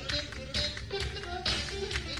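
Live funk band playing a groove, soundboard recording: drum hits land steadily about twice a second over pitched bass and keyboard lines.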